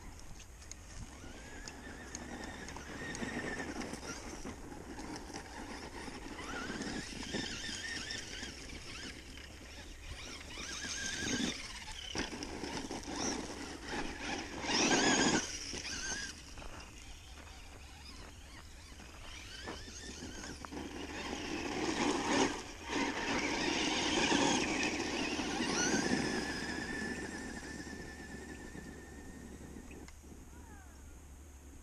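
Brushed 14-turn electric motor of a 2WD Traxxas Stampede RC truck on a 3S battery, whining up and down in pitch as the truck speeds up and slows across grass and gravel. It is loudest about halfway through and again in a long run past twenty seconds.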